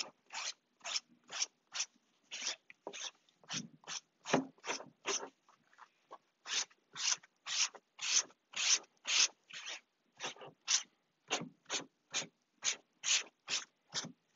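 Paper towel rubbed back and forth over a glue-wet, fabric-covered plywood panel: a steady run of short scrubbing strokes, about two a second, with a brief pause about six seconds in. The wiping works full-strength fabric glue through the fabric to bond it to the plywood.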